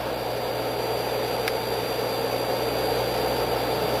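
Vitronics XPM3 820 reflow oven running: a steady machine whir with a low hum, with a faint tick about a second and a half in.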